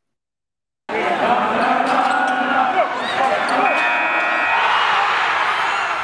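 Silence for about the first second, then the din of an arena crowd, with a buzzer sounding for about a second midway.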